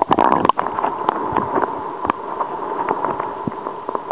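Muffled splashing and gurgling as the camera goes into the sea, loudest in the first half second, followed by a steady underwater hum with scattered small clicks.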